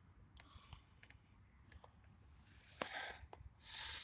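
Near silence broken by phone handling noise: scattered faint clicks, a sharp click about three seconds in with a short rustling hiss after it, and another short hiss near the end as the phone is moved.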